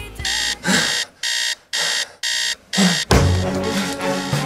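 Phone ringing with an electronic beeping ring: about five short, evenly spaced beeps, roughly two a second. About three seconds in, music comes in underneath.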